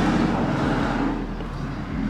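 A car driving off, its engine rumble fading away after a hard, heavy-footed acceleration.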